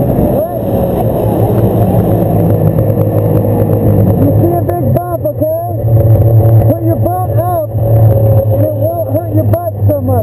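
Snowmobile engine running under way, loud and steady, its pitch sinking slightly in the first couple of seconds. From about halfway a wavering, pitched sound rises and falls over the engine several times a second.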